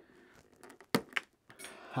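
Side cutters snipping a plastic sword holder off the back of an action figure: sharp clicks with small handling noises between, the clearest snap about a second in and another just after.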